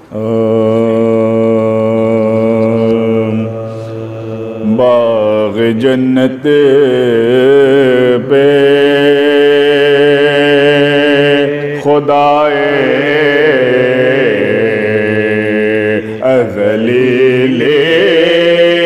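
Soz: men's voices in mournful, unaccompanied melodic recitation, a lead reciter with his companions joining. It begins suddenly with a long held note, then moves into a wavering line that slides up and down in pitch.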